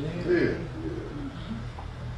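A soft, low murmured "yeah" from a listener about half a second in, over quiet room tone with a steady low hum.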